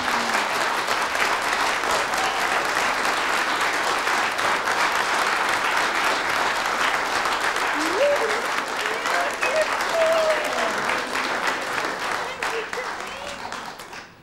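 Studio audience applauding steadily, dying away over the last couple of seconds. A voice is heard briefly over the clapping a little past the middle.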